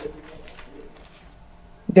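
A faint bird call in the background during a pause in a woman's speech. Her voice comes back near the end.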